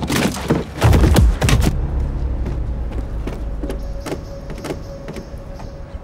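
Action-movie sound effects: a rapid run of sharp impacts with a heavy low boom in the first second and a half, then a low rumble that slowly fades, with a few scattered clicks and a faint steady hum.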